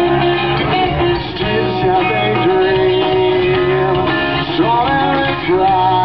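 Live amplified rock band playing an instrumental stretch of a song: electric guitars, bass and drums, with long held notes that bend in pitch.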